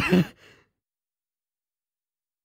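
A man's short, breathy laugh right at the start, fading within about half a second, followed by dead silence.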